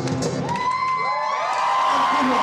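A live folk song's instruments stop about half a second in. Then audience cheers and whoops take over, several voices sliding up and down in pitch.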